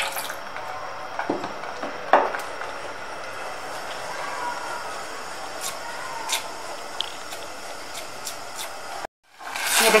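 Lemon juice poured into a steel saucepan of thick, hot mango jam, then the jam cooking on high heat and being stirred with a ladle, with a few knocks of the ladle against the pan. The sound drops out briefly near the end.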